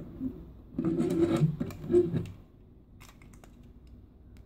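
Plastic parts of a bootleg G1 Weirdwolf Transformers figure being handled and turned, scraping and rubbing for about a second and a half with a sharp knock near the middle, then a few light clicks as joints are moved.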